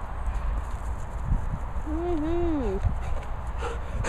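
One short wordless voice sound about halfway through, a bit under a second long, its pitch rising, dipping and falling, over a steady low rumble on the microphone and a couple of soft thumps.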